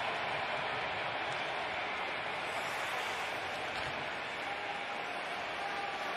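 Steady ice-hockey arena ambience during live play: an even, unbroken noise with no distinct hits or cheers.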